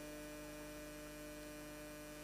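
Faint, steady electrical mains hum: a low drone with a few constant tones and nothing else.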